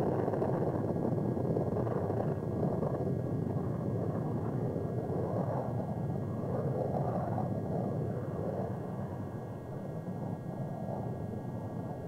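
Rocket engine noise at liftoff: a steady low rumble that fades slowly.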